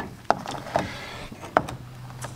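A few sharp knocks of metal struts being handled against a plastic drain pan: one at the start, another a third of a second later and a last one about a second and a half in.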